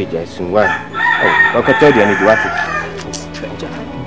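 A rooster crowing once: a long call starting about a second in and lasting nearly two seconds, with voices underneath.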